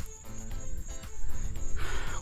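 Wind rumbling on a small camera microphone, with a steady high insect chirring, crickets, running underneath and a faint sustained music chord.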